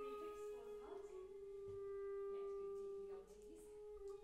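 Clarinet playing long, steady held notes, moving to a new note about a second in and again just after three seconds.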